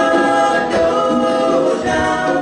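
A group of young men singing together into microphones, several voices holding long sung notes.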